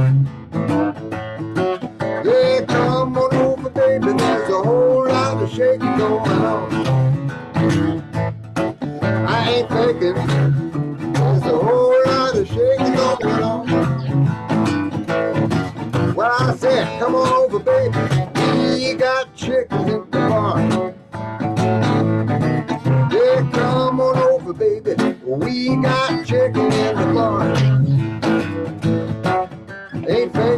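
Guitar strummed and picked in a bluesy rock-and-roll style, with some notes bending in pitch.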